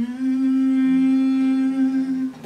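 A man's voice humming one long held note, sliding up into the pitch at the start and then holding it steady.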